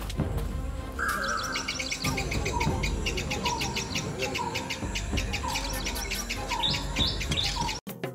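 Birdsong: many birds chirping rapidly, with a lower call repeated about every three-quarters of a second. It cuts off suddenly near the end.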